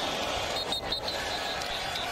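Steady stadium crowd noise from a college football game, with a brief, broken high whistle about three-quarters of a second in as a tackle ends the play.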